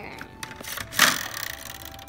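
Plastic Game of Life spinner wheel spun by hand, rattling out a run of quick clicks, with one louder clack about a second in.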